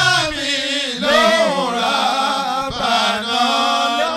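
A man's voice chanting a slow Islamic chant into a microphone, in long, drawn-out melodic phrases that waver up and down in pitch.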